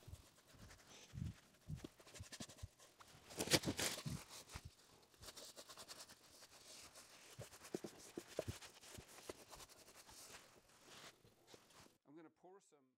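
Faint rubbing and dabbing of a soft pad over a water slide decal on a gessoed wooden panel, with small taps and knocks as the panel is handled. The loudest rubbing comes about three and a half seconds in.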